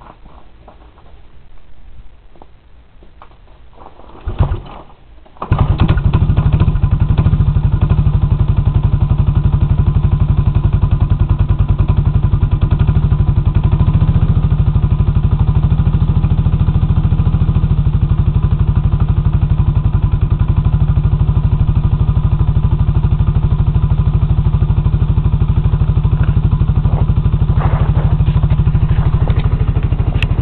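1985 Honda TRX 125 ATV's single-cylinder four-stroke engine cold-started with the pull starter, catching on the second pull about five seconds in, then idling steadily.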